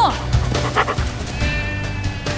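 Trailer score with a Pyrenean mountain dog barking briefly a little under a second in.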